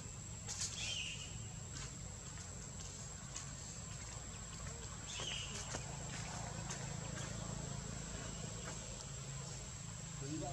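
Tropical forest ambience: a steady high-pitched insect drone over a low hum, with two short, high chirps that fall in pitch, about a second in and again about five seconds in.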